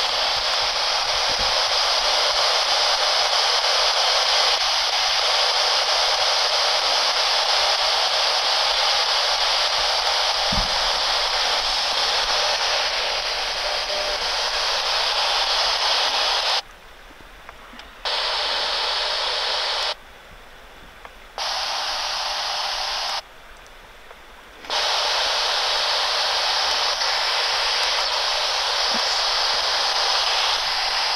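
P-SB11 spirit box hissing with steady radio static as it sweeps through radio frequencies. The static drops out three times, for about a second and a half each, a little past halfway through.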